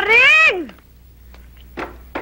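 A single high-pitched vocal call that rises and then falls in pitch, under a second long, followed near the end by short bits of speech.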